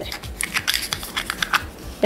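Long fingernails clicking and tapping on a miniature cardboard toy box as it is pried open by hand: a run of light, irregular clicks.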